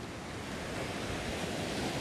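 Sea waves breaking and washing up a sandy shore: a steady wash of surf.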